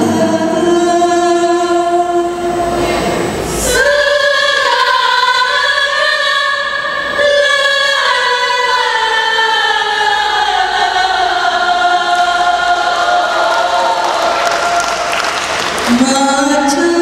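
Women's qasidah ensemble singing a slow Islamic song in chorus, holding long notes. There is a single short percussive hit about four seconds in.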